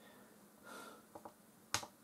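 A single sharp click about three quarters of the way in, after two faint ticks and a soft, muffled sound.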